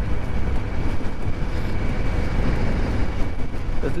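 Steady rumble of strong wind buffeting the microphone over the running engine and tyres of a Hero scooter cruising on a highway at about 60–70 km/h, with a faint steady whine.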